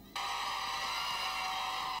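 Many children shouting and cheering at once in a classroom, a dense high-pitched din that starts abruptly and stops at the end.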